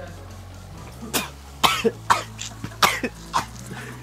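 A young man coughing hard several times in quick succession, starting about a second in. The coughs come from a spoonful of dry ground cinnamon caught in his throat.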